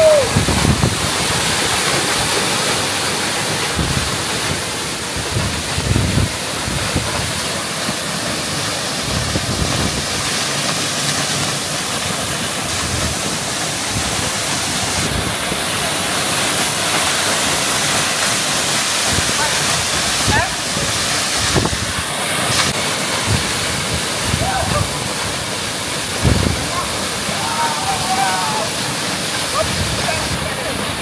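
Waterfall pouring into a pool: a steady, loud rush of falling water, with occasional low thumps and faint voices near the end.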